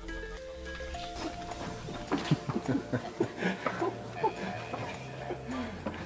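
Music with held notes that change pitch every second or so, and a run of short knocks through the middle.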